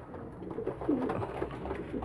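Pigeons cooing softly, a few faint low calls.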